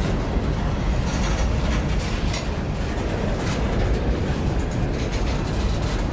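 Freight train of covered hopper cars rolling past close by: a steady rumble of wheels on rail, with occasional clacks as the wheels cross rail joints.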